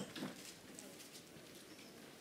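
Very quiet room tone with a few faint, scattered soft ticks.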